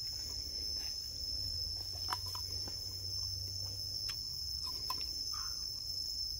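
Steady high-pitched chorus of insects, crickets or cicadas, running unbroken, with a few faint clicks in between.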